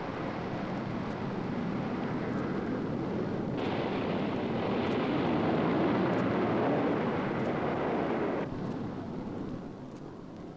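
Steady rushing noise of jet aircraft in flight. It turns brighter and a little louder about three and a half seconds in, then duller and quieter again about eight and a half seconds in.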